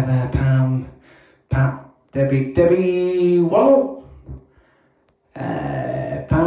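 A man's voice close to a handheld microphone making vocal sounds that are not clear words: a few short sounds, then one long held sound that bends in pitch near its end, a brief pause, and more voice near the end.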